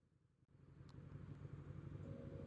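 Kawasaki VN800 V-twin motorcycle engine running at low revs in slow traffic. It is faint and fades in after about half a second of silence, then slowly grows louder.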